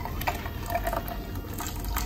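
Blended coconut milk trickling from a plastic jar through a stainless mesh strainer into a metal bowl.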